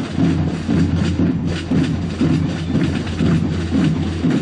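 Marching snare drums of a parade drum corps playing a steady, rhythmic cadence.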